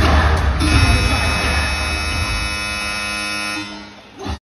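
Bass-heavy arena music breaks off about half a second in, and a steady electronic buzzer tone with many overtones holds for about three seconds before fading: the arena's game buzzer.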